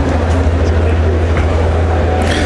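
A steady low drone over the chatter of a crowded exhibition hall.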